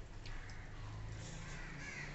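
A bird calling in the background, harsh like a crow's caw, loudest near the end, with a few faint clicks of eating by hand.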